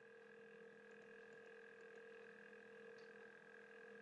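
Near silence: room tone of the recording with a faint, steady hum.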